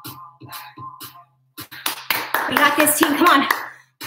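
A person's voice, loudest in the second half, with background music.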